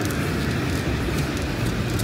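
Steady din of a busy exhibition hall: a constant wash of crowd and hall noise with no distinct event.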